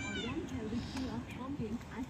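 Peafowl calling: a run of short, rising-and-falling calls repeated several times a second.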